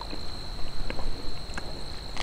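Someone chewing crunchy crackers: a scatter of short, crisp crunches at uneven intervals. Behind them runs a steady, high-pitched insect trill.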